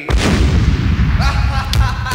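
Electronic techno track starting: one loud booming hit that rings out for about a second over a heavy bass, then synth notes come in and a quick, even drum pattern starts near the end.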